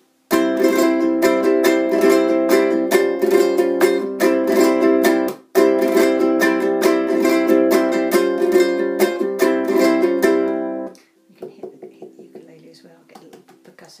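Low-G ukulele played with rapid flamenco rasgueado strumming, fast flicks of the fingers across the strings. The strumming comes in two passages of about five seconds each with a brief break between, and stops about eleven seconds in.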